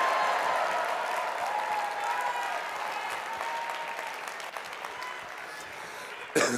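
A large audience applauding with some voices calling out in the crowd, loudest at first and gradually dying away.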